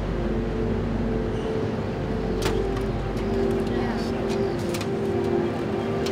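City street sound with traffic, a few sharp clicks and knocks, under steady held tones that shift in pitch every second or two.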